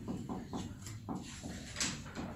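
Felt-tip marker writing on a whiteboard: a quick run of short squeaky strokes, several a second, with one louder stroke near the end.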